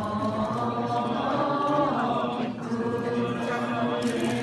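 Many voices chanting a Buddhist mantra together in a steady, sustained drone.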